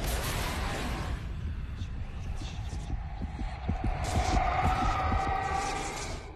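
Title-card sound effect: a sudden whoosh, then a low rumbling throb with uneven pulses and a droning tone that swells about two-thirds of the way through before fading out.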